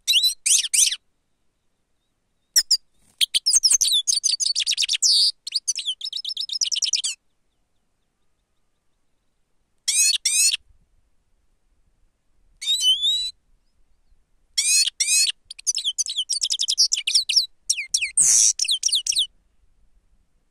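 Goldfinch singing in bursts of quick, high twittering phrases, five phrases in all, separated by pauses of one to three seconds.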